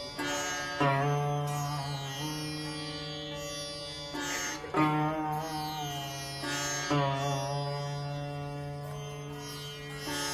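Sitar played solo at a slow pace: a few strong plucked strokes, about a second, five seconds and seven seconds in, each ringing on with notes bent along the fret over a steady low drone.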